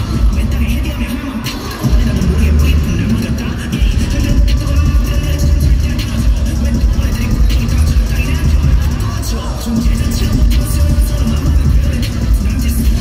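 Live pop song played loud over a concert sound system, with a heavy bass beat under a male singer's vocals.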